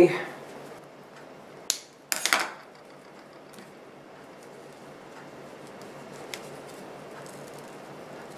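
Quiet hand handling during crafting: a sharp click a little over a second and a half in, then a short rustle, then only a low, steady room hum.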